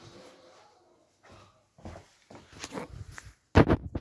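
Handling noise from a phone being picked up and turned: a faint rustle, then a run of short knocks and rustles that grow louder, the loudest near the end.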